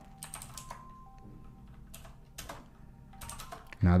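Computer keyboard being typed on: irregular, separate key clicks with short pauses between them as a short terminal command is entered, with a quick cluster of keystrokes near the end.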